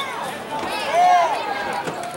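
Shouting voices across a football field during a play, over a steady outdoor background. The loudest shout comes about a second in.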